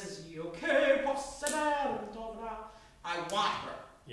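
Speech: a woman talking in a room.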